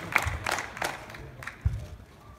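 Scattered audience clapping that thins out over the first second, then a quieter stretch with a single low thump near the end.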